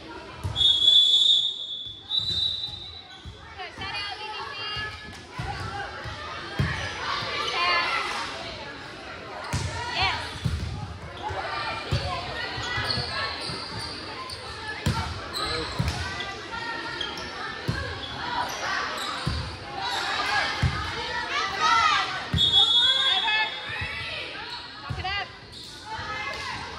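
Gym sound of a volleyball match: a referee's whistle blows twice in the first few seconds and again near the end. Between them come the thuds of the ball being bounced and hit, under overlapping players' and spectators' voices in a large echoing hall.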